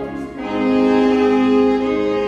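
Three alto saxophones playing a slow melody together in held, sustained notes, with a short break between phrases about a quarter second in before the next long note.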